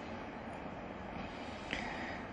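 A steady, low background rumble and hiss with no distinct event.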